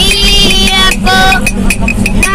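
A boy singing unaccompanied on a moving bus: one long held note, then a shorter note about a second in. Under it runs the bus's steady engine hum, with a quick, steady ticking.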